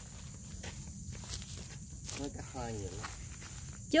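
A few soft footsteps on dirt, with brief faint speech in the middle.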